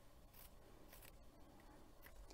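Faint snips of small scissors cutting through loom warp threads, about three cuts.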